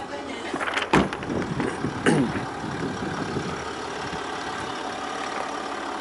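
Car engine idling steadily, with one short thump about a second in.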